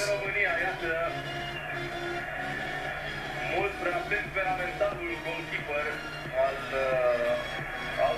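Television football commentary, a man's voice talking steadily over background music and a steady low drone, softer than the close voice on either side.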